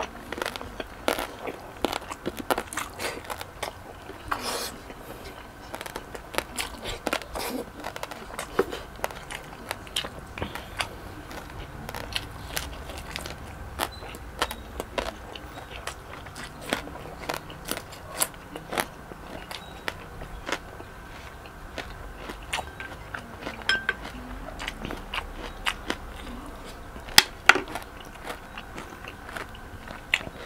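Close-miked chewing of crispy lechon belly and cucumber sticks: irregular sharp crunches all through, with a couple of louder crunches near the end.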